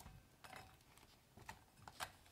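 Near silence with a few faint ticks, a silicone stretch lid rubbing and snapping softly as it is pulled over the rim of a ceramic plate.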